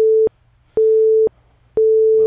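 Electronic countdown beeps of a workout interval timer: three steady mid-pitched tones, each about half a second long, one a second, counting down the last seconds of an exercise interval.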